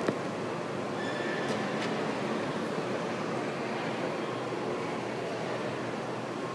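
Steady background rumble of a busy public place, with one sharp click right at the start.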